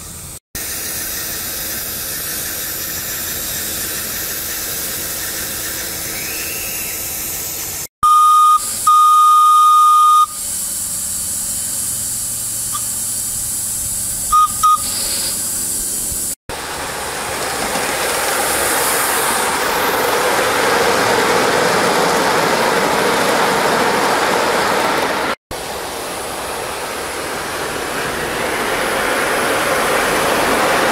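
Aster FEF 4-8-4 live-steam model locomotive hissing steam steadily, louder in the second half. About eight seconds in, its whistle sounds loudly: a short toot, then a longer blast of about a second and a half. Two quick toots follow a few seconds later.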